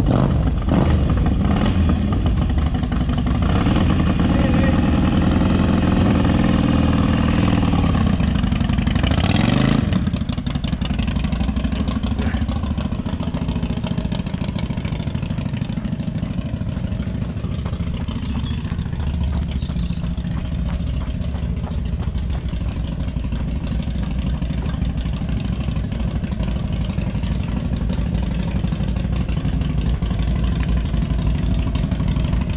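Harley-Davidson V-twin motorcycle engines running loud and low as the bikes ride off. There is a rising rev about nine to ten seconds in, followed by a steadier, slightly quieter engine note.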